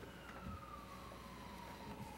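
Faint emergency-vehicle siren in a slow wail, its pitch falling steadily, over a steady low room hum, with one soft thump about a quarter of the way in.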